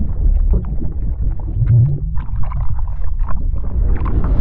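Logo-sting sound effect: a loud, deep rumble with scattered crackles over it.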